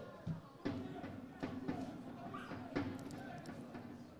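Faint open-air football pitch sound: distant players' voices calling across the field, with a few short sharp knocks.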